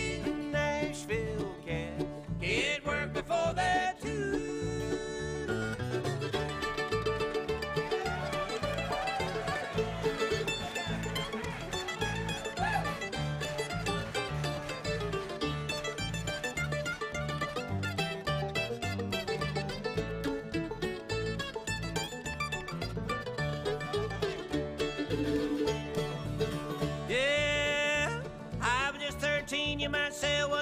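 Bluegrass band playing an instrumental break with the mandolin taking the lead, over acoustic guitar and an upright bass keeping a steady beat.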